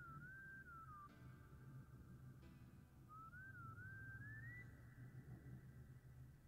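Near silence with a faint, thin high tone that wavers up and down, drops out for about two seconds, then climbs and holds steady near the end.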